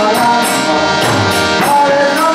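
Harmonium playing a harinam kirtan melody in held reed tones, with a jingling percussion beat about twice a second.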